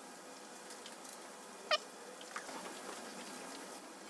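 A single short, high squeak about halfway through, over quiet room tone with a few faint clicks.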